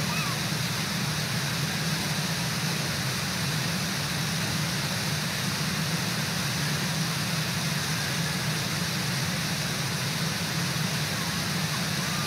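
Waterfall rushing steadily, with the river's whitewater making an even noise throughout. Near the end a few short, repeated rising-and-falling calls start up over it.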